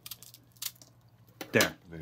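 Scissors snipping through an airy white cheddar cheese puff, a short quiet snip about two-thirds of a second in, with a few faint clicks around it.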